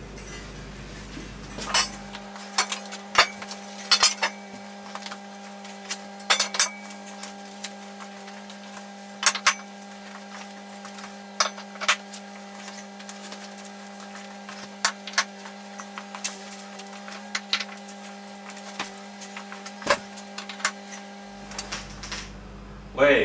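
Irregular metallic clinks and knocks as wheels and their axles are fitted onto a metal tube frame. A steady hum comes in about two seconds in and stops just before the end.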